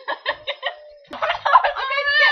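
A rooster crowing: short quick notes first, then a loud drawn-out crow starting about a second in.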